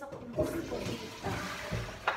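Wall-hung toilet flushed from its wall-mounted push-button plate: water rushes into the bowl, starting about half a second in.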